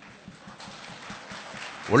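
A pause in a man's speech into a podium microphone: faint background noise with scattered soft ticks, growing a little louder, then his voice comes back in near the end.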